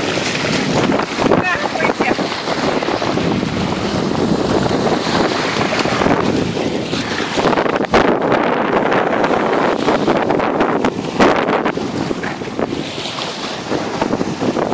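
Wind buffeting the microphone, with waves breaking on the shore underneath.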